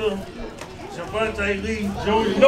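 Indistinct chatter of several people talking in a room.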